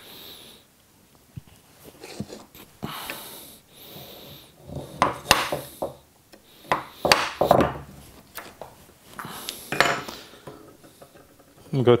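A steel woodworking chisel pushed by hand through walnut, paring waste out of a dovetail socket: a run of short, uneven scraping strokes with small clicks of the blade and handle on the wooden bench, sparse at first and louder and closer together in the second half.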